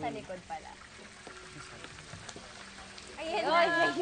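People's voices briefly at the start and again, louder, in the last second, with a quieter stretch of faint kitchen noise between.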